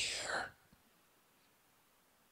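A man's voice ends a breathy, half-whispered word in the first half second, then a pause of near silence: faint room tone.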